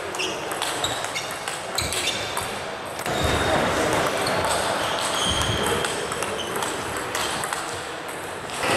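Table tennis ball struck back and forth in a rally: sharp bat and table clicks, each with a short high ping, for about the first three seconds. After that the sound gives way to louder hall noise and voices echoing in the sports hall.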